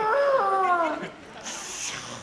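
A person's drawn-out vocal call, one long wavering tone that bends up and then slides down before stopping about a second in, followed by a brief high hiss near the end.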